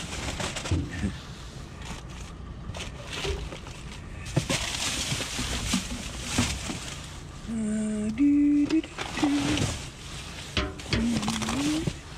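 Rubbish in a dumpster being rummaged with a stick: plastic bags and packaging rustling, with scattered knocks and clunks as items are poked and shifted. A few short low hums or voice sounds about halfway through and near the end.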